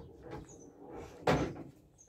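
Pool ball dropping into a pocket and running through the table's internal ball-return: a loud knock at the very start, a low rolling rumble, then a second loud knock a little past halfway.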